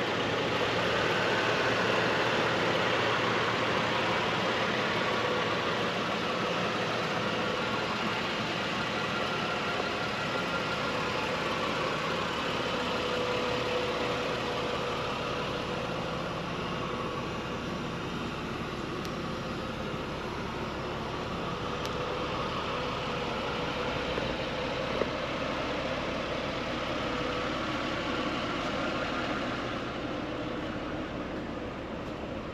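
A steady engine hum with no changes in speed, under outdoor background noise.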